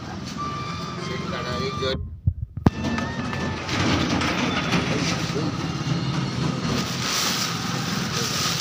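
Busy market street background: indistinct voices and traffic noise. The sound drops out briefly about two seconds in, then comes back as a louder, hissier street noise.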